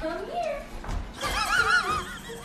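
A person laughing hard in high-pitched, wavering squeals, with a rising whoop near the start and a longer warbling stretch in the second half.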